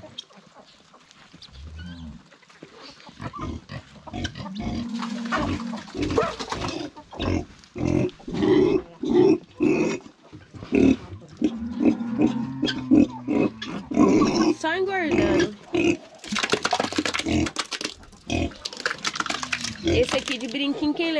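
Domestic pigs grunting over and over as they feed at a trough, the grunts coming thick and fast from a few seconds in.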